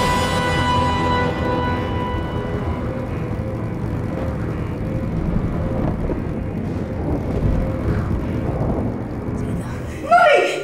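Film soundtrack of a flying motorbike: an orchestral chord fades out over the first couple of seconds, leaving a dense, steady rumble of the motorbike's engine and rushing wind.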